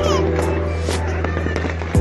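Firework bangs and crackles over background music with long held notes, a loud bang at the start and another near the end.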